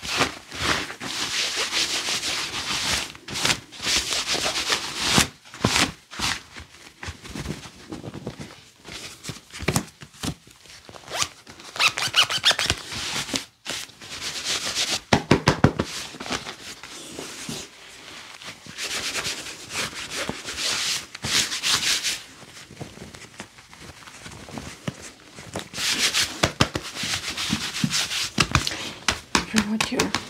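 Gloved hands rubbing and patting down clothing in a body search: repeated swishing strokes of a second or two over fabric, with occasional sharp pats.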